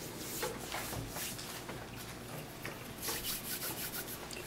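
Faint rubbing and handling noises as hands move a paper strip and a squeeze bottle of white glue on a tabletop, a little louder about three seconds in.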